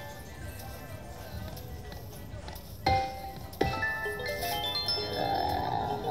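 Video slot machine playing its electronic game sounds: a jingle of short tones while the reels spin, two sharp hits about three seconds in as the reels land symbols, then a rising run of chime tones as a win comes up.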